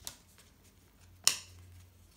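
Two sharp snaps of paper trading cards being set down on a pile on a playmat, a light one at the start and a louder one about a second in.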